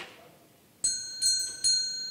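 A small bell struck three quick times, ringing on and fading after the last strike: the traditional signal that opens the meeting.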